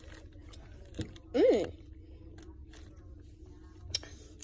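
A girl eating a cookie, with faint chewing clicks and a short hummed voice sound about a second and a half in, its pitch rising then falling.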